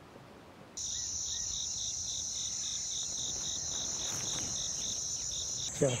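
Insects shrilling in a steady high-pitched drone with a faint regular pulse about three times a second, starting abruptly about a second in.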